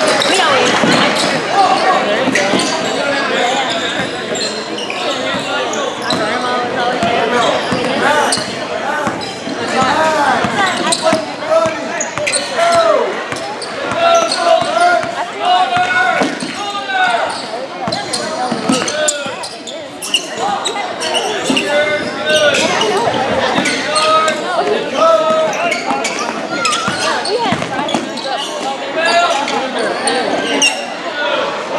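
Basketball dribbled and bouncing on a hardwood gym floor during play, with people's voices calling out throughout, echoing in a large gym.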